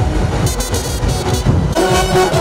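Procession brass band playing: a run of sharp percussion strokes, then held brass horn notes come in near the end.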